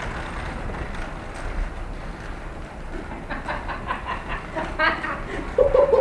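Small wheels of a homemade wooden trailer and an electric scooter rolling over brick paving as the scooter tows the trailer: a steady rolling noise, with voices coming in near the end.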